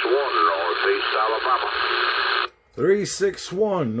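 A distant skip station's voice received in lower sideband through a Uniden Bearcat 980SSB CB radio's speaker: thin and narrow, with steady static hiss under it. It cuts off abruptly about two and a half seconds in as the set is keyed to transmit, and a man then speaks close to the microphone.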